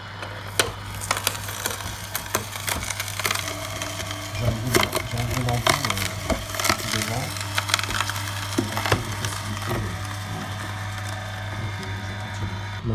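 Slow juicer (masticating juice extractor) running with a steady low motor hum while its auger crushes whole carrots, giving frequent sharp cracking and crunching.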